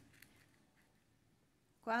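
Near silence: quiet room tone with one faint click about a quarter second in. A woman's voice begins just before the end.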